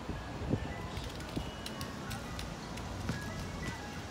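Faint music: a tinkling melody of short, high, clear notes over steady outdoor background noise, with a few light clicks.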